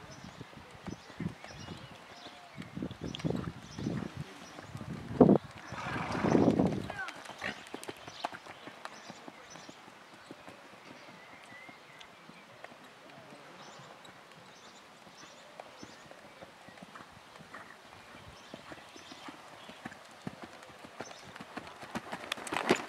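Hoofbeats of a grey Lusitano stallion cantering on arena sand. The hoofbeats are loudest in the first seven seconds, with one sharp thump about five seconds in, and fainter after that.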